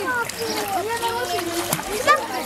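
Pool water splashing as children kick and paddle, under a constant overlap of several voices, children's among them.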